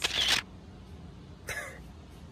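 Camera shutter click sound effect, a single sharp burst right at the start. About a second and a half later comes a shorter, softer breathy sound.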